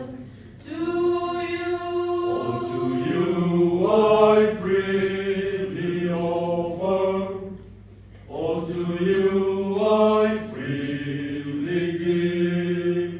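Mixed-voice youth choir singing a slow hymn unaccompanied, in long held notes, with short breaks between phrases at the start and about eight seconds in.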